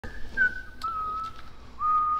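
A person whistling a slow tune: a few held notes, each a little lower than the last, with a short upward slide near the end.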